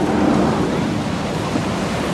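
Wind blowing across the microphone, a loud, steady rush, over the wash of surf on the beach.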